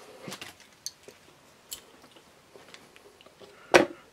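Light clicks and rattles as an RC rock crawler chassis is picked up and handled on a workbench, with one sharper knock near the end as it is tipped onto its side.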